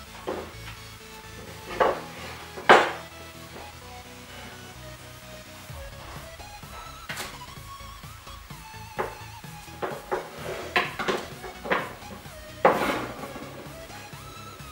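Small wooden boards and hand tools being set down and knocked on a wooden workbench: a string of sharp clacks, the loudest about three seconds in and another near the end, over background music.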